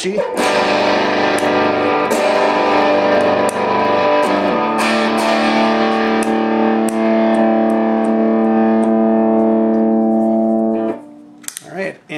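Electric guitar played through a Way Huge Red Llama clone overdrive pedal set to its lowered-voltage sag mode: distorted chords struck several times and left to ring, with a little fuzzy low end and a top end that isn't as punchy. The last chord rings on until it is cut off about eleven seconds in.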